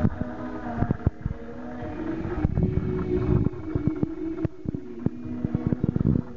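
A live band playing, heard muffled as held notes that shift pitch about once a second, buried under heavy low rumbling and frequent sharp knocks on the microphone.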